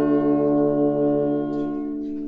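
Trumpet, trombone and electric piano holding one long sustained chord with no drums, slowly fading; the lowest note drops out near the end.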